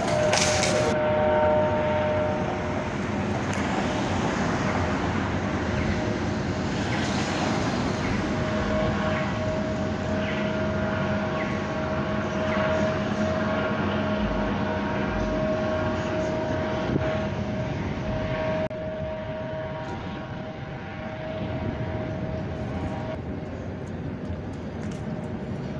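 Helicopter flying overhead: a steady engine drone and whine over an outdoor street noise haze.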